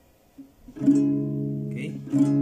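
Acoustic guitar chord played once, about a second in, and left to ring, after a near-silent start with a couple of faint clicks.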